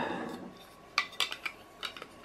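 Hard plastic clicks and knocks, a quick cluster of about half a dozen starting a second in: an action camera being handled and fitted against a 3D-printed PLA case.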